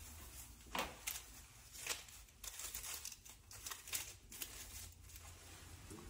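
Aluminium hair-colouring foils crinkling faintly in short, irregular rustles as a foil is unfolded and folded back over bleached hair.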